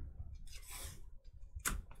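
Trading cards being handled and slid against each other, with a soft rustle about half a second in and a short sharp snap near the end.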